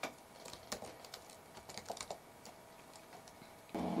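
Typing on a computer keyboard: a handful of faint, irregularly spaced keystrokes.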